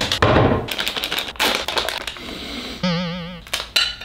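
A quick run of clicks and knocks from a ceramic plate and kitchen things being handled. A short warbling electronic tone, wavering up and down, comes near the end.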